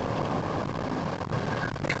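Steady road and engine noise inside the cabin of a moving methane-fuelled car, cruising at a constant speed.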